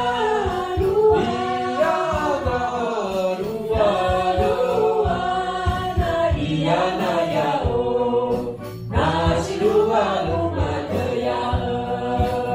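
A mixed group of voices singing together, led by a woman's voice on a microphone, over a regular hand-drum beat. The singing breaks off briefly about nine seconds in, then starts again.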